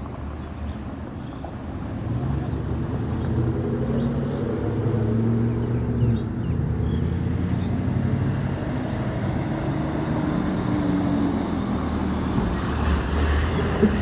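Car traffic on a road: a steady low rumble of engines with a hum that swells about two seconds in and stays up.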